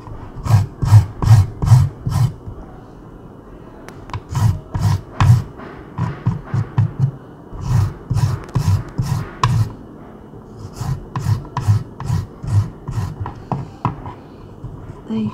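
A piece of fresh, unfrozen ginger is rubbed hard against a hand grater in quick rasping strokes, about two to three a second. The strokes come in bursts with short pauses between them.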